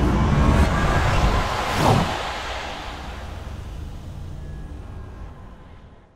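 Logo-animation sound effect: a swelling whoosh over a deep rumble, a sharp falling sweep about two seconds in, then a tail that dies away gradually.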